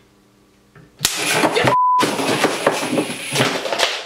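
A homemade mains-powered taser circuit blowing up when switched on: a sudden loud blast about a second in, then about three seconds of loud, crackling, hissing noise as the circuit burns and smokes. A short censor bleep cuts in partway through.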